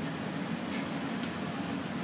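Steady whooshing hum of a biosafety cabinet's blower, with a faint click a little past the middle.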